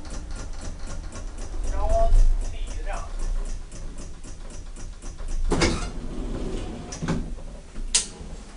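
KONE elevator modernised by Hissen AB, heard from inside the car: a low rumble with a rapid ticking, about four ticks a second, and two sharp knocks, one about two-thirds of the way through and one at the very end.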